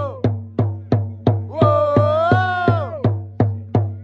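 A supporters' drum beating a steady rhythm, about three beats a second. A sung chant note is held over it in the middle.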